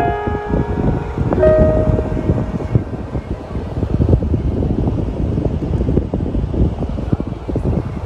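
Background music plays its last few held notes and fades out over the first two seconds. Wind buffeting the microphone follows as a loud, gusty low rumble.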